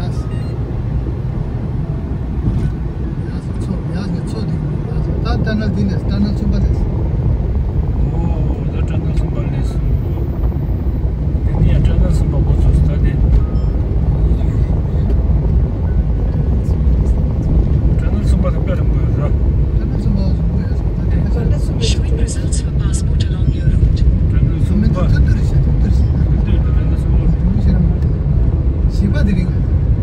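Road and engine noise inside a moving car's cabin: a steady low rumble that grows somewhat louder over the first ten seconds or so. Brief bits of talk come through now and then.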